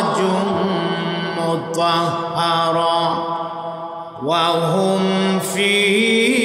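A man's voice chanting melodically in long held notes that glide up and down, the sung recitation style of a Bangla waz sermon, amplified through a microphone. A short break comes about four seconds in, then a new phrase rises into a long held note.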